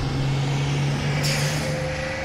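City bus engine running with a steady low hum, and a short hiss of air about a second in.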